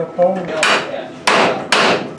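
Hand hammer striking the steel wing-to-fuselage attachment fitting, three sharp blows roughly half a second apart, knocking a wing-attach bolt into its aligned hole.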